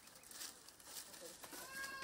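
Faint room noise, then about one and a half seconds in an animal starts a long call held at a steady pitch.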